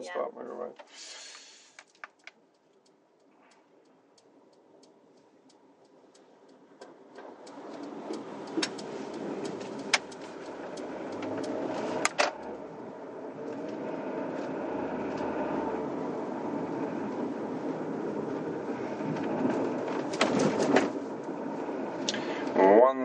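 Car cabin noise, engine and tyres on the road, from an automatic car pulling away from the kerb. It rises steadily out of near silence as the car gathers speed, with a few light clicks.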